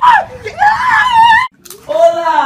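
A person screaming in a high, wavering voice, cut off abruptly about a second and a half in.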